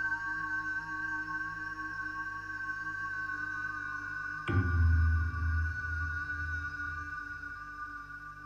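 Ambient documentary score: a steady electronic drone of held tones, with a sudden deep low hit about four and a half seconds in, followed by a few pulsing low notes that fade.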